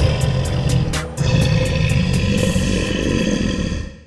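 A Tyrannosaurus rex roar sound effect over background music, in two long stretches with a short break about a second in, fading out near the end.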